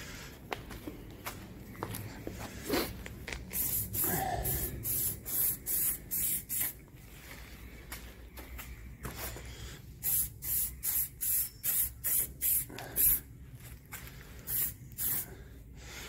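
Aerosol can of clear lacquer spraying in short, quick hisses, one after another, in three runs with pauses between.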